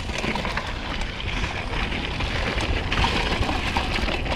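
Mountain bike ridden fast downhill over dry dirt and rock: steady tyre and rushing-air noise with many small rattles and clicks from the bike.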